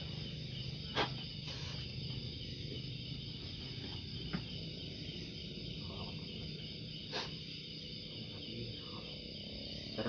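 Crickets chirring steadily in the background, with a sharp click about a second in and another around seven seconds.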